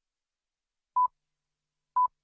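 The BBC time signal pips: short, single-pitch beeps exactly one second apart marking the top of the hour, one about a second in and the next at the very end.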